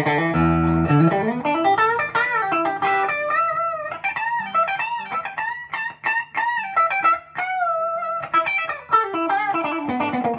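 Fender Noventa Telecaster with its single P90 bridge pickup, played through a clean amp with the tone control turned fully up. A lead solo opens on a ringing chord, then moves into single-note lines with string bends and vibrato, getting busier near the end.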